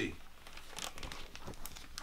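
Plastic-sleeved portfolio page crinkling and rustling as it is turned over, a few short scattered rustles.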